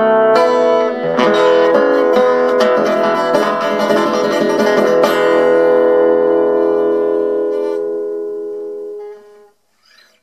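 Solo acoustic guitar closing a blues tune: a few quick picked and strummed figures, then a final chord struck about five seconds in and left ringing until it fades away.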